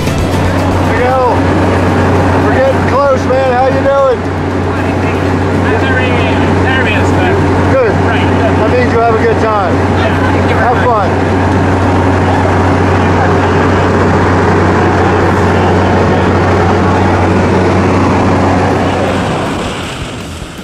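Steady low drone of a skydiving jump plane's engine and propeller, heard from inside the cabin. Voices call out over it now and then in the first half, and the drone drops away just before the end.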